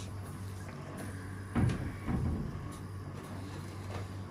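Two dull low knocks about half a second apart, over a steady low hum of room or equipment noise.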